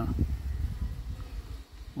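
Wind buffeting the microphone: an uneven low rumble.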